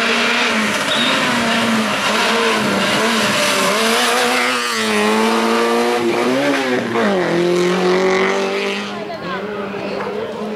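Peugeot 106 race car's engine revving hard and falling back again and again through the slalom. The pitch drops sharply about seven seconds in, then climbs once more, and it is quieter in the last second.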